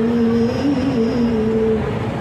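Women's voices chanting dzikir, an Islamic devotional chant: a slow line of long held notes that steps down in pitch and breaks off near the end.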